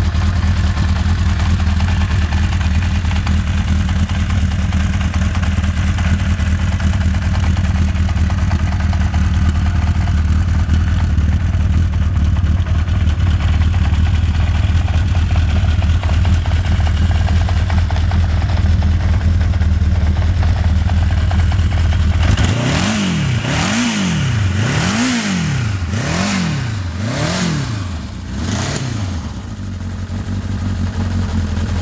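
1983 Honda CB1000's inline-four engine idling steadily, then revved up and down six or seven times in quick succession over the last several seconds.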